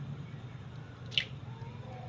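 A raw egg cracked open over a plastic tub with the tines of a fork: one sharp tap about a second in, with the squish and drip of the egg coming out.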